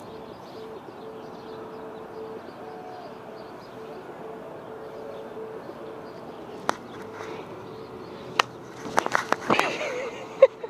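Outdoor background noise with a low hooting tone that pulses on and off in short even beats for about six seconds. A couple of sharp clicks and a brief flurry of knocks and movement come near the end.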